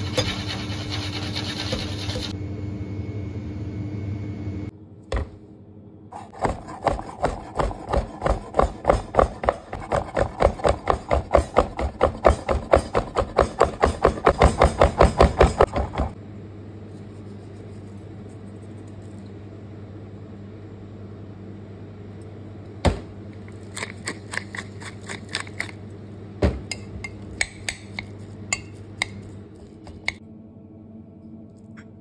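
Large kitchen knife chopping raw beef fillet on a wooden cutting board: a fast, even run of strokes at about four a second, growing louder for about ten seconds before stopping. It follows a few seconds of steady hiss, and the later part holds only scattered light clicks of the knife over a low hum.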